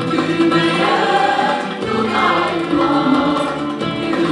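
Mixed choir of men and women singing a Turkish art-music song, accompanied by a small ensemble of violin, acoustic guitar, keyboard and hand drum.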